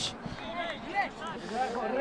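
Faint, indistinct talk by men's voices in the background, quieter than the commentary around it.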